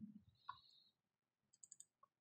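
Near silence with a few faint clicks from a stylus on a tablet screen: one about half a second in, then a quick run of three or four near the end.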